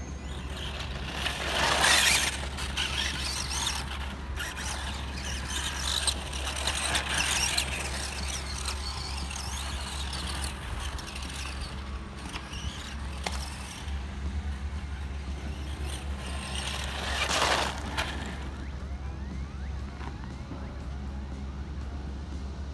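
Tamiya Super Storm Dragon electric RC buggy running on a dirt track. The whine of its motor and the crunch of its tyres on loose gravel swell loud twice as it passes close by, about two seconds in and again about eighteen seconds in.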